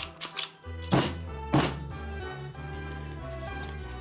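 Manual staple gun snapping staples through canvas into a wooden stretcher bar: sharp clicks right at the start and two louder snaps about a second in and half a second later, over steady background music.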